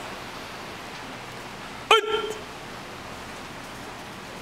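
A single short, sharp shout about two seconds in, a barked command or count during karate drill practice, over a steady background hiss.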